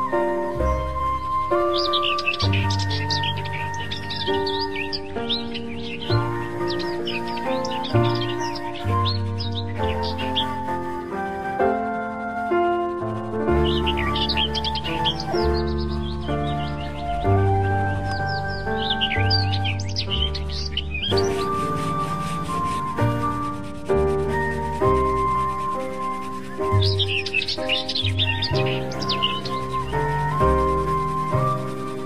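Instrumental background music with held melodic notes over a bass line, with bursts of bird chirping about every five seconds.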